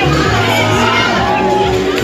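A crowd of children shouting and cheering over loud music.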